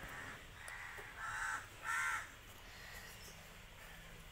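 A crow cawing: four calls in quick succession in the first two seconds or so, the last two the loudest.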